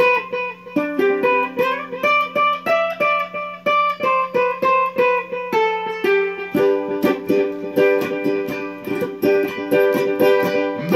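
Acoustic ukulele played solo: a melody picked note by note at about three to four notes a second, changing about two-thirds through to steady strummed chords.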